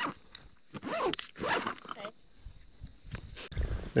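A backpack zip being pulled open, with rustling as the bag is handled. A faint voice comes in about a second in, and there is a low thump near the end.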